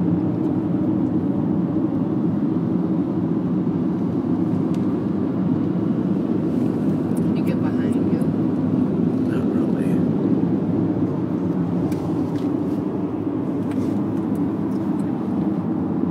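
Steady low rumble of road and tyre noise inside the cabin of a moving car, with a few faint clicks in the middle.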